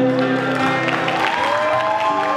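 Two acoustic guitars playing live, their chords ringing on, with audience applause and cheering starting to come in.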